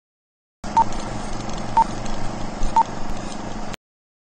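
Three short, high electronic beeps, one a second apart, over a steady low hum and hiss that starts suddenly and cuts off abruptly near the end.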